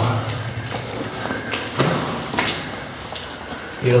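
A few short knocks and scuffs, with a rustle of clothing, as a person shifts about against a rock wall.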